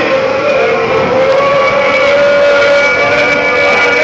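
Group of football fans singing together as they walk, holding long drawn-out notes over the noise of the crowd.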